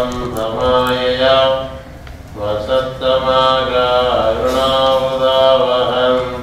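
A man chanting a mantra solo, in long held phrases on a few steady pitches, with a short pause for breath about two seconds in.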